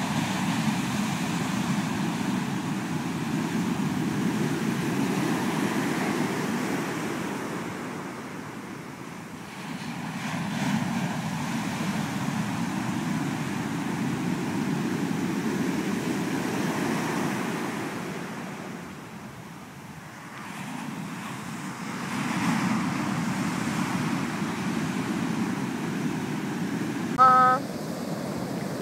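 Big surf breaking in the shore break and washing up a sand beach: a steady rushing roar that swells with each wave and eases off twice into lulls between sets.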